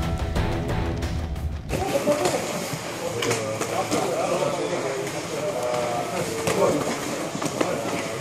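A short burst of logo intro music that cuts off under two seconds in, followed by the sound of a martial-arts training room: several people talking and calling out, with scattered thuds and slaps of strikes and bodies landing on the mats.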